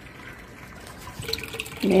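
Water running into an open rooftop plastic water storage tank, a steady splashing as the tank fills.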